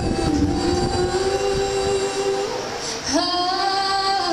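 Girls' voices singing long held notes in harmony with an acoustic bluegrass band of guitar, fiddle and upright bass. The band's low accompaniment thins out about halfway, and a new, higher held note comes in about three seconds in.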